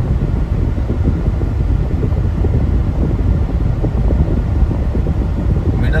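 Steady low rumble of a car's road and tyre noise heard from inside the cabin while driving at highway speed.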